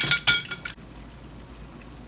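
Metal Ivocap injection cylinder clinking against the metal flask clamp as it is fitted into place: a quick cluster of ringing metallic clinks lasting under a second.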